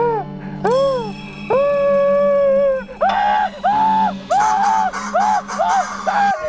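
A man screaming and wailing in fright: one long held cry, then a string of short 'ah' cries about twice a second, over a low steady background music drone.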